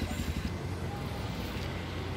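Steady low rumble of street traffic, with no clear birdsong heard.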